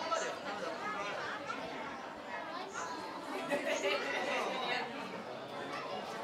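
Indistinct chatter of many people's voices overlapping at a steady level, a crowd of onlookers talking among themselves in an echoing hall.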